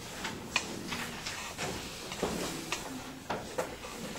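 Irregular small knocks and clicks, about a dozen, over faint room noise.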